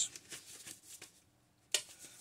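Faint handling of a plastic VHS tape case being worked open, with one sharp click near the end.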